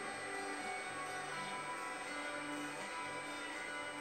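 Background music of slow, sustained notes changing pitch every half second or so.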